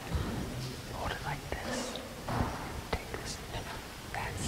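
Hushed, whispered speech, with a couple of faint sharp clicks in the middle.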